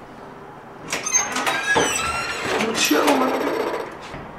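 An apartment door being opened, its hinge squealing in long sliding pitches, with several sharp clicks from the lock and handle.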